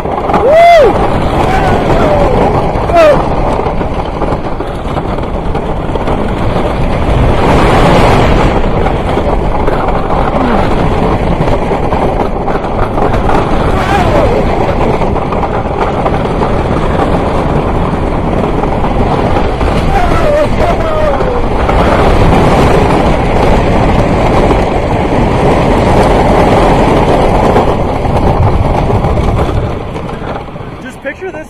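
Roller coaster train running along the track at speed: a loud continuous rumble of wheels on track, with wind buffeting the microphone, fading as the train slows at the very end.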